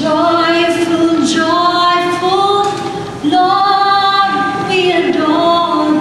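A woman singing into a microphone, holding long notes that slide gently between pitches.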